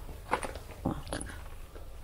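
A few short, faint clicks and crinkles of plastic blister packs of car air fresheners being handled on a display hook.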